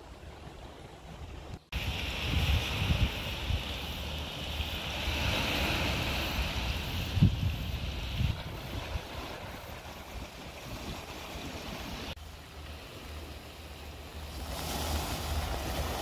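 Small waves washing onto a pebble beach, a steady hiss that is loudest in the first half, with wind rumbling on the microphone. The sound drops out for a moment twice, near two seconds in and near twelve seconds.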